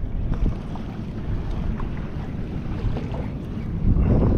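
Wind buffeting the microphone as a low, uneven rumble over sea water lapping at a kayak, with a few faint ticks.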